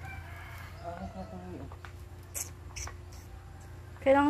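A faint rooster crows in the first second and a half. A few short scratchy strokes of a stick broom on the ground follow near the middle.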